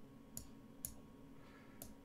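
Three faint computer mouse clicks, two in the first second and one near the end, as chess pieces are moved on an online board, over a low room hum.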